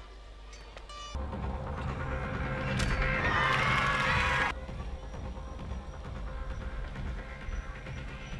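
Background music, with a single sharp crack about three seconds in as a jumping high kick strikes the board, followed by a loud burst of crowd cheering that cuts off abruptly after about a second and a half.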